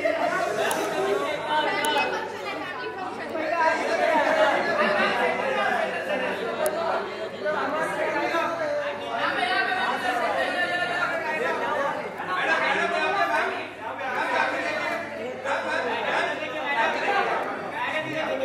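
Many voices talking over one another: busy crowd chatter in a large room.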